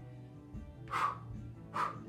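Background workout music with two short barks from a dog, one about a second in and one near the end.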